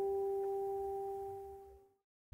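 A single guitar note ringing out as one sustained tone, the tail of a short acoustic guitar intro, fading steadily away to silence a little before the end.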